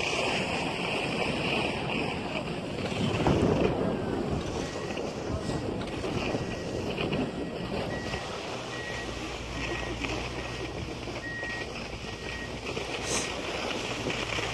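Wind rushing over a phone's microphone while moving across a ski slope, in a rough, uneven hiss that swells about three seconds in. A low steady hum joins about eight and a half seconds in.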